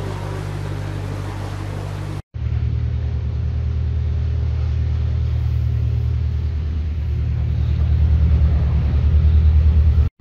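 A narrowboat's diesel engine running steadily at low revs, with a regular pulse to its beat. The sound breaks off briefly about two seconds in, then the engine grows somewhat louder near the end.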